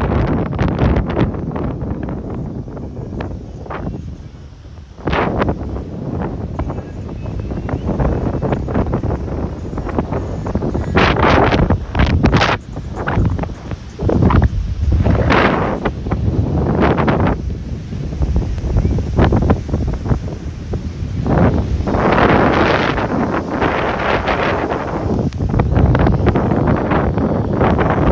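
Wind buffeting a handheld phone's microphone in uneven gusts, a loud rumbling noise that surges and eases every second or two.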